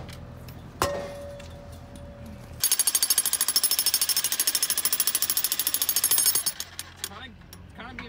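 Corded electric jackhammer pounding a chunk of concrete caked on a post. It starts about a third of the way in, runs for about four seconds in a fast, even hammering, then stops.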